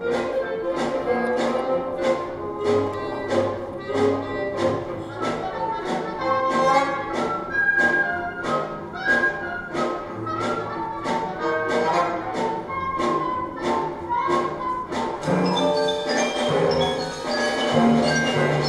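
Orchestral ballet music in a jive rhythm, with a steady beat of about two strokes a second under moving string and wind lines. Near the end, higher ringing notes come in.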